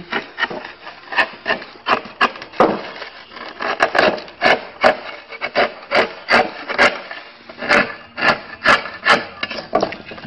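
Hand-lever slate cutter chopping through a slate shingle, a quick series of short, sharp crunching bites, about two to three a second, as the blade nibbles the slate round along the scribed line.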